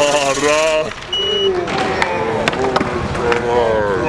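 Excited shouting and chatter from several skaters at a concrete skatepark, with a few sharp skateboard clacks about halfway through.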